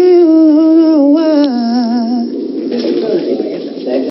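A woman's voice humming a drawn-out, wavering melody in long held notes, breaking off about two seconds in and leaving a quieter murmur.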